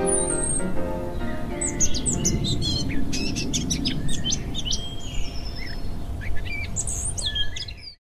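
Birds chirping and trilling, many short high calls, over a steady low rumble; piano music dies away in the first second, and everything fades out at the very end.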